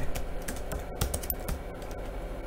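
Computer keyboard being typed on: a run of separate quick keystrokes.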